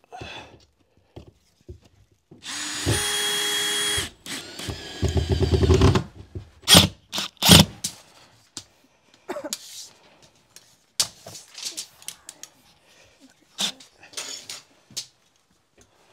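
Power drill driving drywall screws: a steady motor whir of about a second and a half, then a second, stuttering run as a screw is sunk. A few sharp knocks and taps follow.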